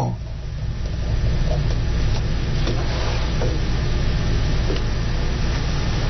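Steady low hum with an even hiss: the background room noise of a surveillance recording in a pause between words.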